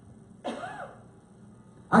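A short vocal sound from a person, one brief rising-and-falling utterance about half a second in, then a quiet pause before a man starts speaking right at the end.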